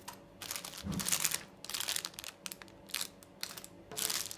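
Clear plastic packaging bag crinkling in irregular crackles as it is handled.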